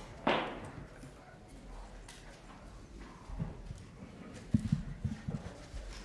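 Handling noise as chairs and the table are moved and bumped: a brief scraping rustle just after the start, then a cluster of dull knocks and thuds about three and a half to five and a half seconds in.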